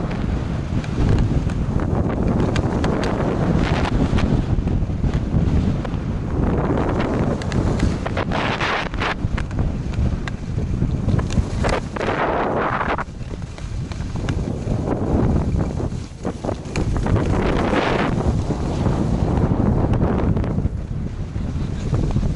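Wind rushing over the microphone of a camera carried by a skier running downhill. Under it is the hiss and scrape of skis sliding on packed snow, which swells in surges as the skier turns.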